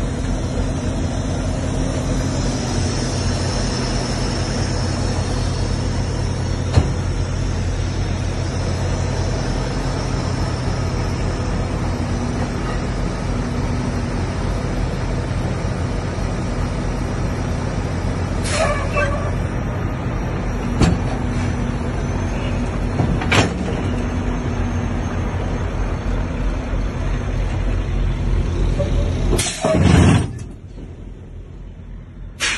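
Semi truck's diesel engine idling with a steady low hum, with a few sharp knocks scattered through, the last near the end.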